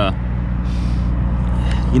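Semi truck's diesel engine idling steadily.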